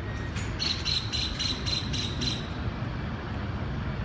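Street traffic noise with a steady low rumble. About half a second in comes a run of about seven quick, high-pitched chirps, evenly spaced, lasting nearly two seconds.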